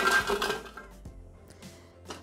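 Dry biscuits poured from a glass bowl into a Thermomix's stainless-steel mixing bowl, rattling and clinking against the metal for about half a second, then a few faint clinks.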